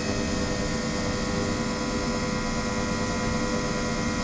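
Ultrasonic water tank driven at 28 kHz, running with a steady hum made of many constant tones and a thin high whine on top.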